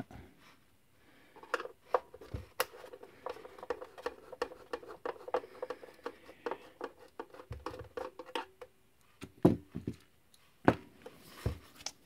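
Screwdriver and hands working the plastic case of a small portable TV while its screws are taken out: many quick, irregular clicks, taps and scrapes of plastic and metal. A faint steady hum runs through the middle part.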